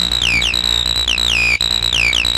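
Electronic dance music from a DJ set in a stretch without the kick drum: a high synthesizer riff with repeated downward pitch slides over a steady low bass drone.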